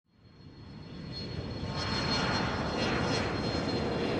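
Airplane engine sound effect, fading in from nothing and growing louder over about two seconds, then holding steady with a thin high whine, as if the plane is approaching and passing overhead.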